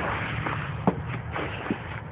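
Footsteps scuffing over littered ground, with a couple of light clicks, over a steady low rumble.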